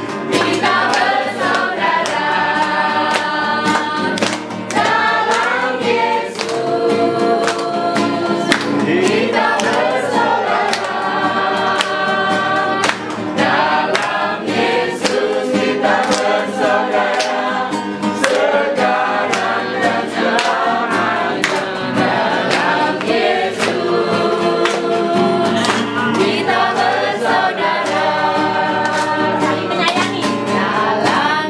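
Music: a group of voices singing a gospel-style song over a steady beat of sharp hits, with no break.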